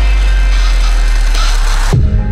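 Drumstep electronic dance music: a long held deep sub-bass note under a wash of noise that brightens near the end, then cuts off suddenly just before the close.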